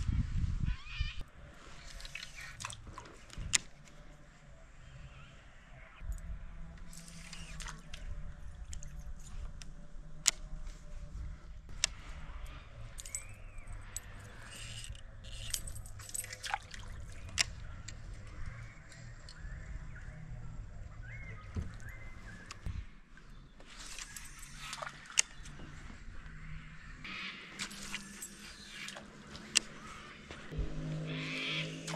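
Water sloshing lightly against a plastic kayak hull over a low, steady rumble, with scattered sharp clicks and knocks from the fishing gear and boat.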